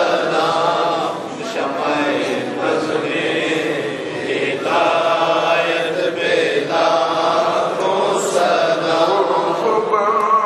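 Melodic religious chanting in long held phrases, with short pauses between them.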